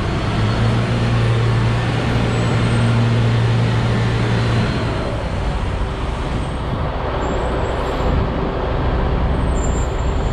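Heavy diesel engines running in a large metal warehouse: a steady drone with a strong low hum that eases off about four and a half seconds in, as a forklift loads steel onto a flatbed semi-trailer beside an idling truck.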